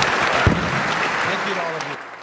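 Audience applauding, with voices talking underneath, a single low thump about a quarter of the way in, and the sound fading near the end.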